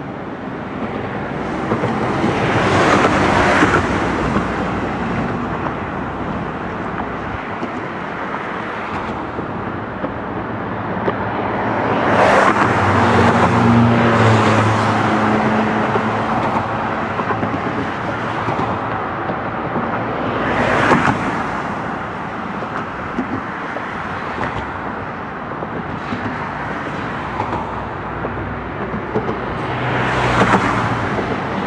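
Road traffic on a highway, with cars passing by one after another. Each pass swells up and fades over a few seconds; the loudest come about three seconds in, from about twelve to fifteen seconds in, and about twenty-one seconds in, and one pass near the middle carries a low engine hum.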